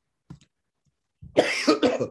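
A man coughing: a short fit of two or three coughs starting about a second and a half in.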